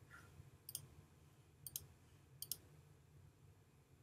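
Three computer mouse clicks about a second apart, each a quick press and release, over a faint low hum.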